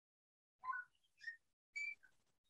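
Three faint, short whistle-like chirps about half a second apart, starting about half a second in, each a little higher in pitch than the one before.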